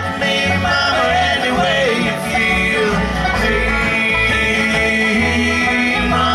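Live bluegrass band playing: rolling banjo, strummed acoustic guitar and bass, with a lead melody line that slides in pitch over the top.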